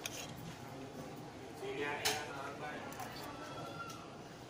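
A steel spoon clinking once on a steel plate about halfway through, over indistinct background voices.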